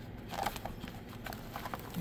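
Paper notepads being handled and pushed into a clear plastic storage bin: light rustling, with a few soft taps in the first half second.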